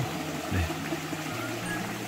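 Steady rushing of a mountain valley stream, with a faint low steady hum beneath it.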